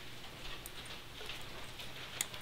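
A few faint, light metallic clicks of pliers working a cotter pin out of a castle nut on a steering knuckle.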